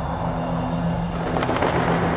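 A steady low rumble with a constant hum under it, even in level throughout.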